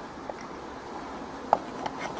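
A few small, sharp clicks of hard plastic Playmobil toy parts being handled and fitted together, as a clear shelf is set into a toy refrigerator's frame, over a low hiss. The sharpest click comes about one and a half seconds in.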